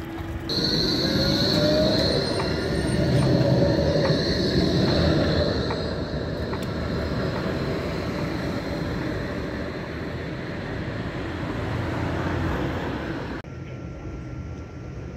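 Yellow Berlin tram running along the street: a rumble of wheels on rail, with a rising whine and a high steady squeal during the first few seconds that then fade into the running noise. The sound changes abruptly just before the end.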